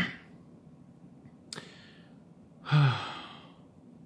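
A man sighs once about three-quarters of the way in: a short voiced sound that drops in pitch and trails off into a breathy exhale. A brief sharp breath or click comes about a second before it.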